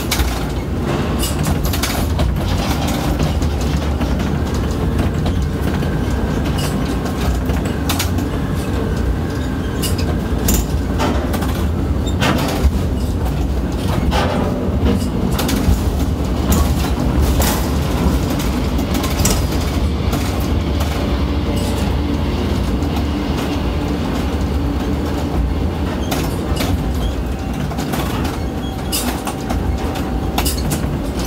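Ship-to-shore container crane at work, heard from the operator's cab: a steady low rumble of the hoist and trolley drives with frequent clicks and clanks as the spreader rises out of a ship's hold and travels out over the dock.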